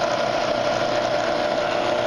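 Bridgeport Series I mill's 2 HP spindle motor and variable-speed head running steadily at about 120 rpm in the low range, a constant mid-pitched hum.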